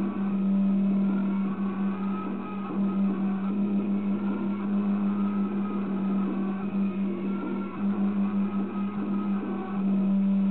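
A loud, steady low hum held on one pitch without a break, over a busy, muffled background noise.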